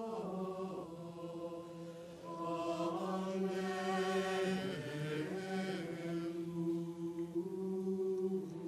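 A choir singing the introit chant, a single melody line of long, held notes.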